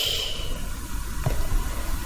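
Steady hiss of background noise, with a faint high tone fading out in the first half-second.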